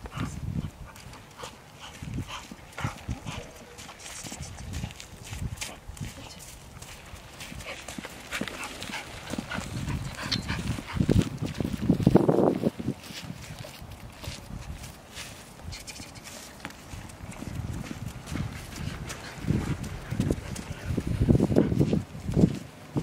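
Sounds from a five-month-old American Akita puppy walking on a leash, among irregular low thuds of footsteps on a wet dirt road. The loudest sound comes about twelve seconds in.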